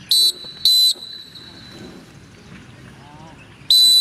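A pea whistle blown in two short blasts, then one longer blast near the end: drill signals to a formation of recruits, where two blasts mean squat.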